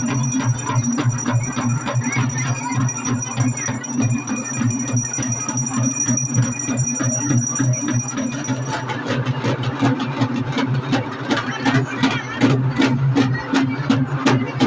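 Festival frame drums beaten with sticks in a fast, steady rhythm, getting sharper and more prominent about nine seconds in, over the chatter of a crowd.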